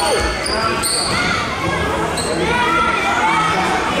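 Indoor futsal game in a large, echoing sports hall: many voices of spectators and players shouting over each other, a ball thumping at the start, and a few short squeaks of shoes on the wooden floor.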